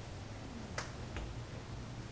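Two short, sharp clicks less than half a second apart, about a second in, over a low steady hum of room tone.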